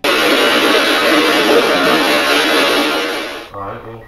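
Spirit box static: a loud, amplified hiss of a radio-sweeping device with a faint garbled voice inside it, taken for the words 'say what'. The hiss cuts off about three and a half seconds in.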